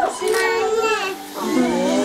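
A child's voice singing in long held notes, with people talking over it.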